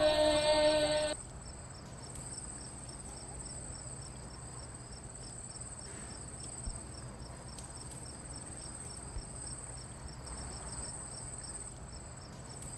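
Background music cuts off about a second in, leaving steady insect chirping: a high, thin trill pulsing quickly and evenly, like night-time crickets, over a faint low hum.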